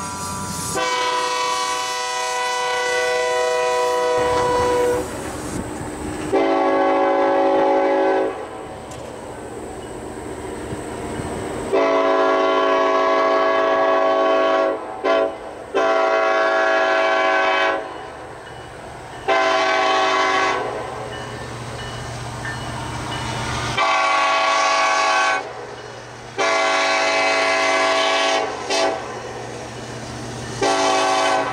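Locomotive air horn of a Union Pacific SD70ACe-led freight train nearing a grade crossing, sounding a series of long and short chords a few seconds apart as the crossing warning. A low rumble of the approaching train fills the gaps between blasts.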